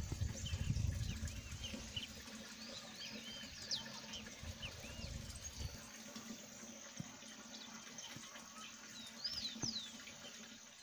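Wild birds chirping, with many short rising-and-falling whistled calls, thickest in the first half and again near the end. A low rumble on the microphone runs under the first six seconds, then stops.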